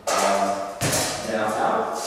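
A single sharp knock about a second in as a long-handled whaling skimmer is set down, with a man talking.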